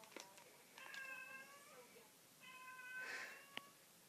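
A domestic cat meowing twice, faintly, each call about a second long, with a light click near the end.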